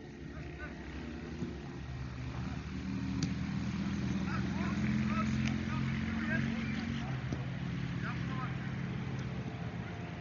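A motor engine's steady drone that grows louder to its peak about halfway through, then eases off again.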